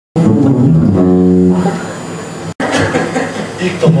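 Acoustic guitars playing, with a held note about a second in that fades away. The sound cuts off abruptly about two and a half seconds in, then guitar sound and voices resume.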